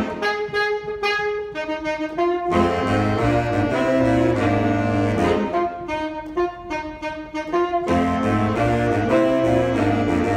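Saxophone ensemble with a bass saxophone playing a piece in held, moving chords. The low bass part rests twice, for the first couple of seconds and again just past the middle, leaving only the higher saxophones.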